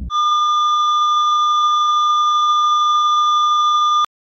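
Patient-monitor flatline tone: one steady, high electronic beep held for about four seconds, then cut off suddenly, the sign of a heart that has stopped.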